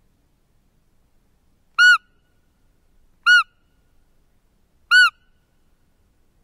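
Roe deer lure call blown three times to draw in a buck: three short, high-pitched peeps about a second and a half apart, each rising and then falling in pitch, all alike.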